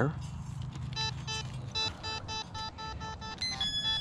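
Metal detector sounding a string of short electronic beeps of one pitch, then a higher tone near the end, as a small target in a handful of dirt is checked: the speaker takes the target for can slaw, shredded scraps of aluminium can.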